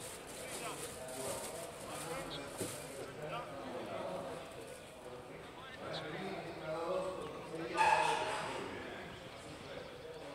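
Voices calling out at a distance across a rugby pitch during play, with one loud call about eight seconds in.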